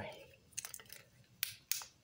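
Light clicks and taps of batteries and parts of a small flashlight being fitted together by hand: a quick cluster of small clicks about half a second in, then two sharper clicks near the end.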